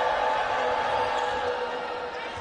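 Basketball arena crowd noise during live play, with a steady held tone over it that fades out near the end.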